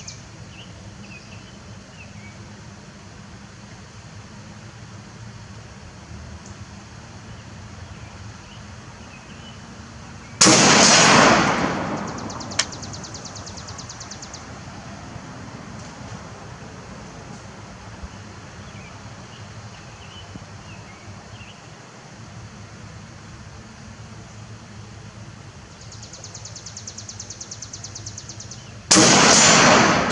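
Two rifle shots from a Beretta ARX100 with a 10-inch barrel firing 5.56 mm rounds, about 18 seconds apart, each a sharp report followed by a long fading echo. Between the shots insects buzz in a pulsing rhythm and birds chirp faintly.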